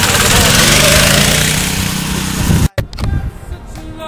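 Go-kart's small gas engine running as the kart drives along, with music underneath. About two-thirds of the way through the engine sound cuts off suddenly, and music with singing carries on.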